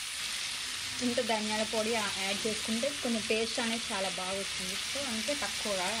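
Mutton pieces frying in oil in a kadai, a steady sizzle. From about a second in, a woman's voice talks over it.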